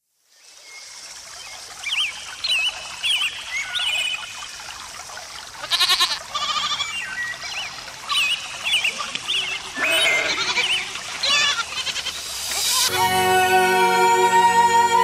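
Ambience of a bleating flock of herd animals, with two louder bleats about 6 and 10 seconds in, short high chirping calls, and a steady hiss underneath. Music with sustained tones comes in near the end.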